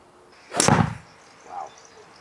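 A golf club striking a ball off a hitting mat: one sharp impact about half a second in, with a brief tail as the ball is driven into the practice net.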